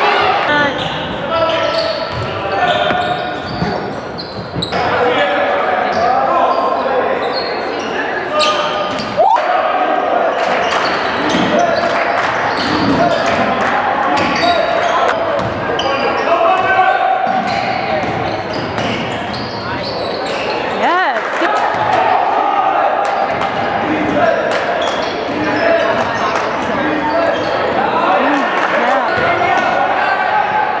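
Basketball being dribbled and bounced on a hardwood gym court during live play, amid continuous chatter and calls from spectators and players.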